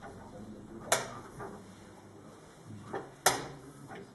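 Chess clock pressed twice during blitz play: two sharp clicks about two and a half seconds apart, with a lighter knock of a piece set down on the board just before the second.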